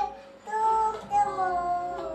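A young girl singing two held notes, the second sliding gently down in pitch.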